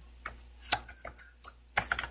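Computer keyboard being typed on: a short run of irregularly spaced key clicks as a few characters are entered.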